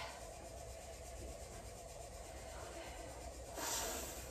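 Low steady room hum, then near the end a short, forceful exhale through pursed lips: a woman breathing out with the effort of a dumbbell lift.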